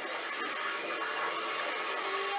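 A steady hissing noise with a faint high held tone, part of a TV episode's soundtrack playing in the room.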